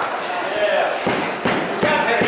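Gloved boxing punches landing: three dull thuds between about one and two seconds in, over a steady murmur of crowd voices.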